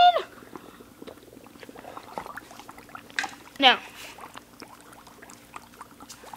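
Dry ice bubbling faintly in hot water, a scatter of small ticks over a low hum. About three and a half seconds in comes one short, high cry that falls sharply in pitch.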